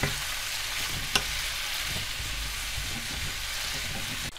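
Chopped red and green peppers and garlic sizzling steadily in olive oil in a frying pan while being stirred with a wooden spatula, cooking down until soft. A single sharp click about a second in.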